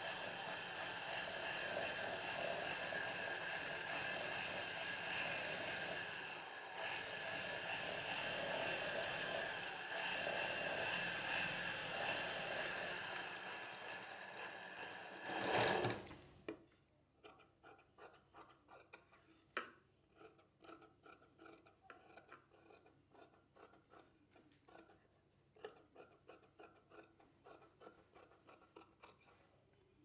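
Domestic straight-stitch sewing machine running steadily as it stitches a seam, stopping suddenly about halfway through. Then comes a run of quiet, rapid scissor snips as tailoring shears cut the thread and trim the seam edge of the fabric.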